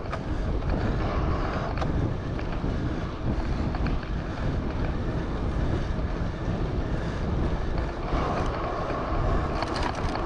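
Wind rumbling on the microphone of a camera on a moving bicycle: a steady low rumble with road noise that holds throughout.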